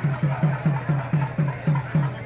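A low-pitched drum beaten in a steady, even run of about four strokes a second, each stroke dipping slightly in pitch; the beating stops just after the end.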